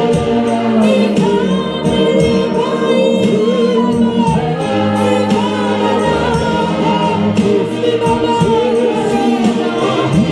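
Gospel worship singing: a woman's lead voice with several voices joining in, over steady held notes of accompaniment.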